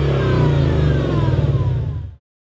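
Ford Mustang 5.0 V8 GT engine running loud through a Scorpion aftermarket exhaust, its pitch sliding down as the revs fall away after a blip of the throttle.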